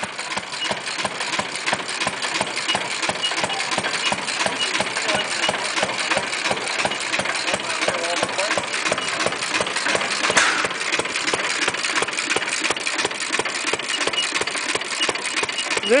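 Antique stationary flywheel gas engine running steadily, an even, rapid train of sharp exhaust beats. The small three-horsepower engine is a continuous-run type, firing on every cycle rather than hitting and missing.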